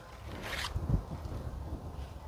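A brief rustling scrape about half a second in, over a low, steady rumble.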